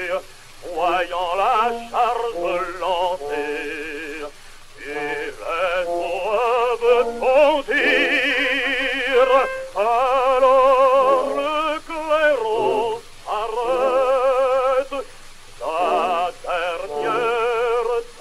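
Male opera singer singing in French with heavy vibrato and orchestral accompaniment, in phrases with short breaks between them, on an early acoustic 78 rpm disc recording whose sound is thin and cut off above the upper midrange.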